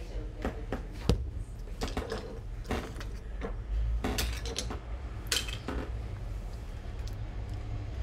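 Scattered light knocks and clatter of small objects being handled on a workbench, over a steady low hum.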